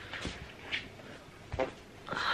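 Faint handling sounds as the camera or lights are adjusted: a few soft knocks and rustles, with a short voiced sound about one and a half seconds in.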